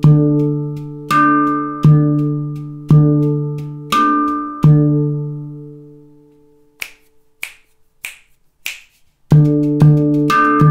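Victor Levinson handpan played slowly in a Khaliji groove: struck notes with a deep ding tone that rings on between strokes. After the last stroke, about five seconds in, the ringing dies away. Four short dry taps follow, about half a second apart, and the groove starts again near the end.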